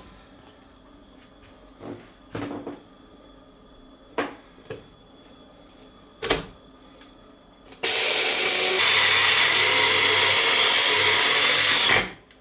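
A few light knocks of the blender jug and lid being handled. About eight seconds in, a jug blender starts suddenly and runs steadily and loudly, grinding a full jug of bran flakes down to powder.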